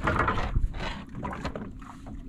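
Knocks and a scrape of a large giant trevally being dragged and laid down on a boat deck among other landed fish. The loudest part is a short scraping burst at the start, followed by a few fainter knocks.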